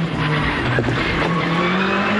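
Rally car's engine heard from inside the cockpit, accelerating hard out of a tight corner, its note dipping briefly and then rising steadily, over road and tyre noise.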